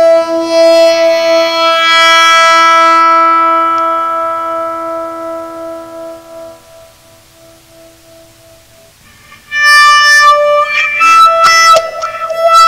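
Electric guitar played with a cello bow: a long bowed note with a rich stack of overtones rings on and slowly fades almost to nothing. About nine and a half seconds in, a new loud bowed note starts.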